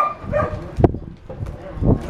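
Puppy giving a few short yips while it mouths a hand, with a sharp knock a little before the middle.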